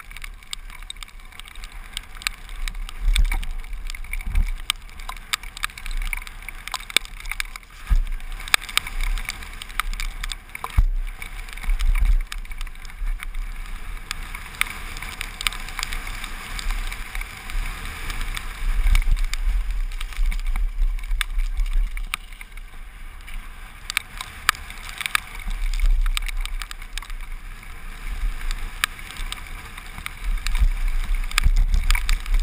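Mountain bike running fast down a rough gravel trail, its tyres crunching over stones and the bike rattling and knocking over bumps, with wind gusting on a helmet-mounted camera's microphone.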